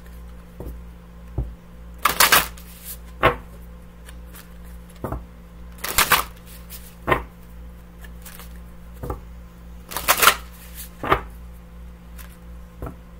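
A deck of tarot cards being shuffled by hand: short loud bursts of cards riffling and slapping together, coming roughly in pairs every few seconds, with quieter taps between.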